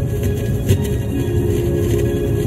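Steady low road rumble of a moving vehicle heard from inside the cabin, with music playing over it, its held notes growing clearer in the second half.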